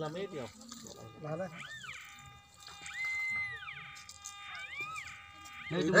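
Three high mewing animal calls, each rising and then falling in pitch, the middle one the longest, with faint voices underneath.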